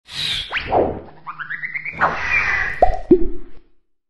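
Cartoon sound effects for an animated logo intro: swishes and quick rising and falling pitch glides, a short run of rising tones, then two quick plops near the end.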